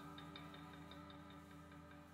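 Faint ambient background music: held low tones with a light, quick ticking pulse over them, slowly fading.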